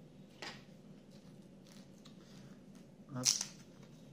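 Faint handling noise: paper and small plastic bags rustling as the assembly booklet and screw packets are moved on a cloth, with a short, sharper rustle about half a second in.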